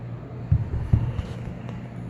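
Two dull, low thumps about half a second apart, from the camera being handled and repositioned, over a steady low hum of room ventilation.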